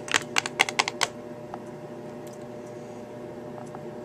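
A quick run of sharp plastic clicks in the first second as small plastic toy figures are handled against a plastic playset, then only a faint steady hum.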